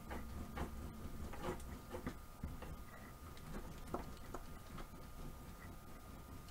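Flat plastic smoothing tool rolling a rope of soap dough back and forth on plastic sheeting: faint, irregular rubbing and crinkling strokes with light clicks, over a faint steady high hum.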